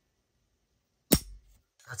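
A single sharp metallic click, about a second in, of an AR-15's Black Talon Tactical drop-in trigger resetting as the finger lets it forward.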